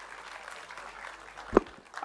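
Faint applause from an audience, a light even patter at the close of a speech. A single sharp thump about one and a half seconds in is the loudest sound.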